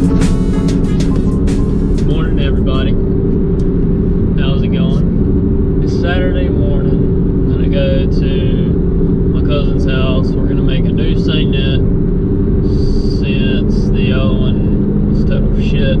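Car running, heard from inside the cabin: a loud, steady low drone of engine and road noise.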